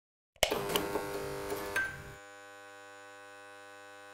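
Electronic logo sting: a sudden hit about half a second in, a few sharp ticks over the next second and a half, then a steady electronic hum of several held tones to the end.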